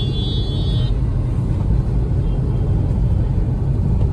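Inside a moving Volkswagen Polo, a steady low engine and road rumble, an engine the driver says sounds like a generator. A high steady tone stops about a second in.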